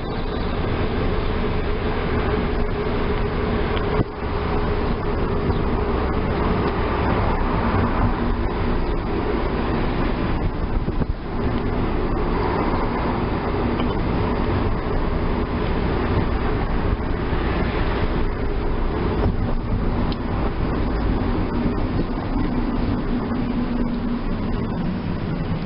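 Car driving, heard from inside the cabin: steady engine and road noise, with brief dips about four and eleven seconds in.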